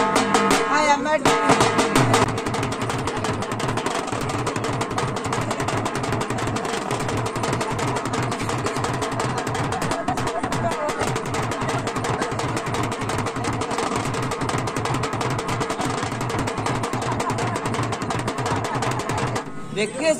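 Double-headed dhol drum beaten with a stick in a fast, unbroken roll, the accompaniment to a string-puppet dance.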